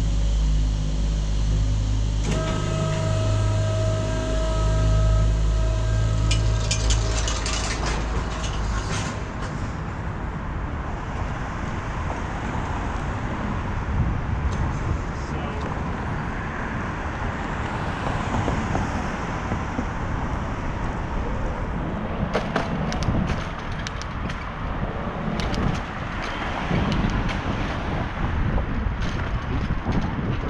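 A steady low machine hum with a whine joining about two seconds in, cut off after about nine seconds. From then on, wind rush and road noise of a bicycle riding along a city street, with scattered clicks.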